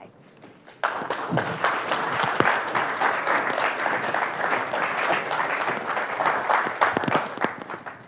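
Audience applauding, starting about a second in and going steadily, easing off just at the end.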